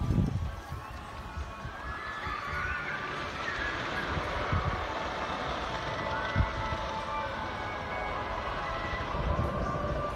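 Outdoor ambience: wind gusting on the microphone with low thumps, and faint distant voices.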